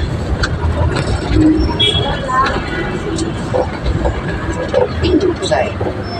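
Steady engine and road rumble heard from inside a moving vehicle's cabin, with indistinct voices over it.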